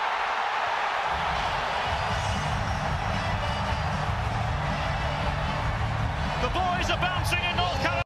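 Stadium crowd cheering a goal: a dense, steady roar that swells and fills out about a second in and holds through the celebration.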